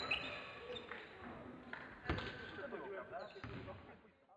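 Sports hall sound: a basketball bouncing on the court floor, loudest about two seconds in, with a few lighter knocks and voices in the hall. The sound fades out at the end.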